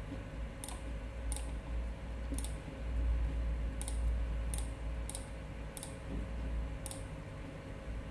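About ten sharp, separate clicks at an uneven pace, from a computer being clicked to enter letters on an on-screen keypad, over a faint steady low hum.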